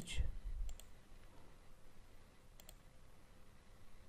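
A few faint computer mouse clicks, one a little under a second in and two close together near the middle.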